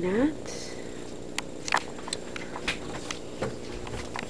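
Scattered light clicks and knocks, about five, from camera handling and footsteps as someone walks through a travel trailer, over a steady low hum.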